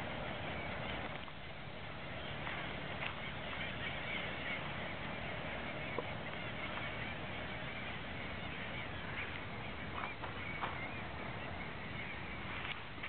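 A distant feeding flock of seabirds, gulls and fulmars, calling continuously over the water, their cries blending into one wavering chorus. A steady low rumble runs underneath, with a few faint clicks.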